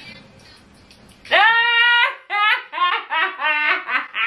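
A woman's loud, high-pitched laugh: about a second in, it starts as one long shriek, then breaks into quick bursts of about four a second.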